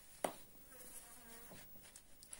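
A single sharp click about a quarter second in. Then a flying insect buzzes faintly for just under a second, its pitch wavering as it moves, with a couple of light ticks from handling the honeycomb frame near the end.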